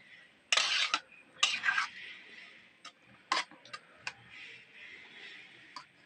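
A spoon scraping twice against cookware, followed by a few light metallic clinks of kitchen utensils.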